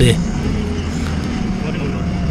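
Forklift engine running steadily under way, a low even hum heard from inside the operator's cab.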